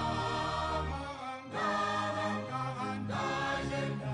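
Music: voices singing together in long held phrases over a steady low bass, with short breaks between phrases about every second and a half.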